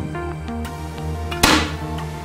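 A single shot from a Walther 10 m match air rifle about one and a half seconds in: one sharp crack, heard over background music of short steady notes.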